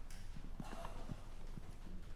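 Scattered, faint footsteps and shuffling as several people, children among them, walk back to their pews.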